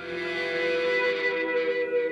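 Music for a production-company logo: a short sting that starts suddenly with a bright shimmering wash over a held tone, the shimmer thinning out after about a second and a half.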